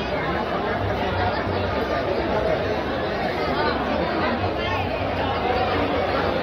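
Steady background chatter of several people talking indistinctly.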